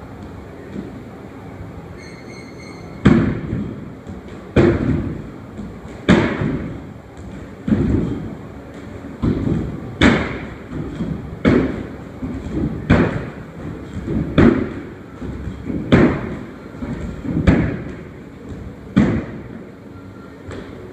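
Repeated box jumps onto a wooden plyo box: about a dozen sharp thuds of feet landing, roughly one every second and a half, starting about three seconds in and stopping shortly before the end.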